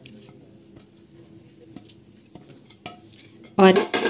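Boiled macaroni being tipped from a dish into a plastic mixing bowl of dressed shredded salad, with faint, scattered clicks and scrapes of the dish against the bowl. A woman says one word near the end.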